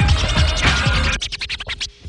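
Hip-hop beat that breaks off about a second in into a fast run of short, choppy turntable scratches.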